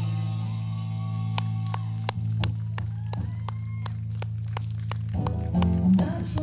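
Live rock band: bass and guitar hold a low note ringing under light, evenly spaced ticks, about three a second. Near the end, guitar chords start up.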